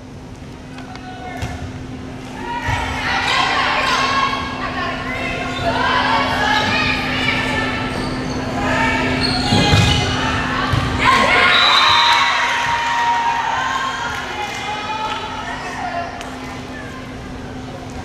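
Volleyball rally in a school gym: players and spectators calling out and cheering through the point, with sharp ball hits near the middle where it is loudest. A steady low hum runs underneath.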